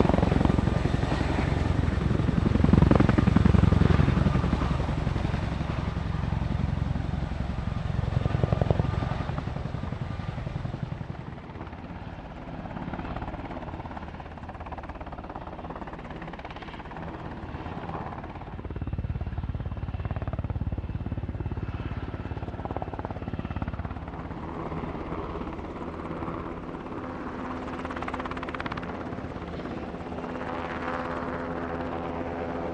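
Military helicopter rotors: a CH-47 Chinook's tandem rotors are loud for the first few seconds and fade away by about ten seconds in. After that, a UH-60 Black Hawk's rotor is heard hovering at a steadier, lower level.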